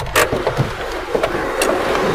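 A car moving slowly, heard from inside the cabin, with a sharp click just after the start and another near the end.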